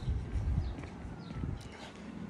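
Footsteps of someone walking at an even pace, with wind rumbling on the microphone.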